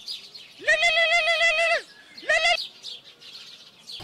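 Mobile phone ringtone: a warbling, pitched tone sounding in rings about a second long. One full ring is followed by a brief third ring that cuts off abruptly as the call is answered.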